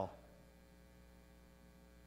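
Faint, steady electrical mains hum, with the tail of a spoken word dying away at the very start.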